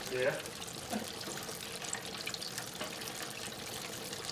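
Breaded chicken deep-frying in a wire basket in a commercial fryer: the hot oil bubbling and crackling steadily.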